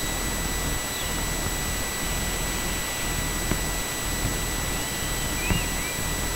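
Steady rushing wind noise on the microphone, with a few faint high bird chirps, most of them near the end.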